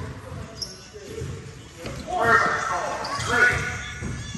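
Basketball dribbling on a hardwood gym floor, with players' voices calling out about halfway through and again near the end, echoing in a large gym.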